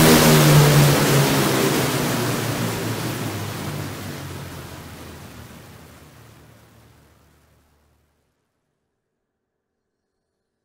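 Cinematic trailer downer sound effect played back from the DAW. It opens with a sudden loud, distorted hit over a low rumbling drone, pitch-automated downward and saturated with the low end cut, then fades out over about seven and a half seconds.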